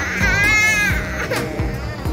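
A baby crying in two wavering wails of a bit under a second each, the second ending about a second in, over background music.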